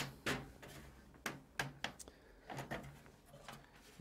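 Faint, scattered sharp plastic clicks, about half a dozen, as a computer logic board is worked up off the plastic retaining clips that hold it in the case.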